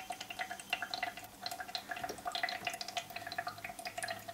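Filtered water trickling and dripping from the outlet of a Brita filter cartridge into the jug's reservoir below, a quick, irregular patter of small drips. The water comes out slowly through the cartridge's small outlet hole as the filter works through the water poured in above.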